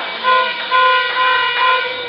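A horn blowing a run of short toots on one steady pitch, about five blasts in two seconds.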